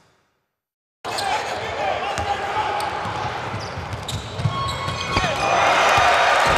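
Live basketball arena sound after about a second of silence: a basketball bouncing on the hardwood court with sharp knocks, over the din of the crowd. The crowd noise swells louder in the last half second as the fast-break dunk goes in.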